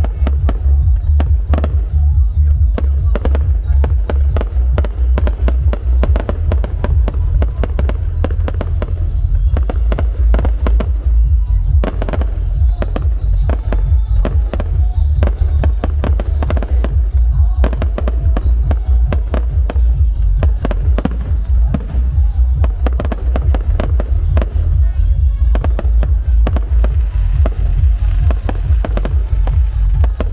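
Aerial fireworks shells going off in rapid, continuous succession: many sharp bangs and crackles, several a second, over a constant deep rumble.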